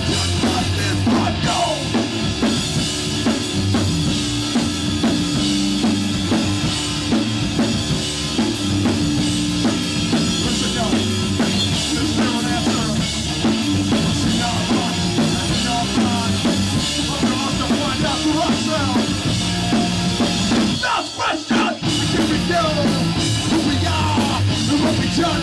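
A hardcore punk band playing live, with distorted electric guitar, bass and a full drum kit. The music breaks off for a brief stop about three seconds before the end, then comes back in.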